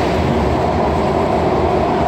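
Washington Metro subway car running, heard from inside the car: a steady, loud low rumble of wheels and motors on the track.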